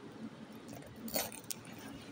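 A school backpack being handled and packed: fabric rustling and small hard items clinking, with a louder rustle just after a second in and a sharp click soon after.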